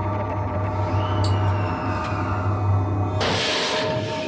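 Tense documentary background music over a steady low drone. Near the end comes a short rushing hiss lasting under a second.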